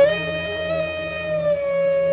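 A flute holding one long note that sags slightly in pitch about halfway through, over a low steady drone.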